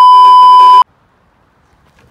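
Television colour-bar test tone: one steady, very loud beep that cuts off abruptly about a second in.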